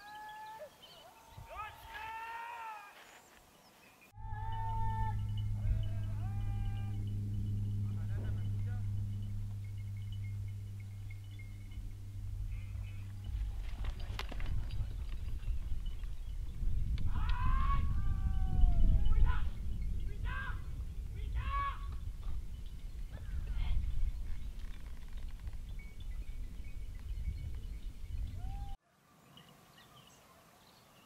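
Hunting hounds barking and yelping in short bursts, in clusters near the start and again in the middle. A steady low hum runs for several seconds, then a rumble like wind on the microphone, and the sound cuts off abruptly twice.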